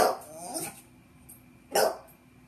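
A dog barking in short, sharp barks, one loud bark near the end, pestering its owner for attention.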